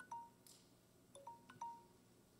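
Near silence broken by about five faint, short chime-like pings: one just after the start, the rest clustered after about a second.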